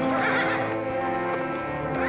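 A horse whinnying over orchestral theme music.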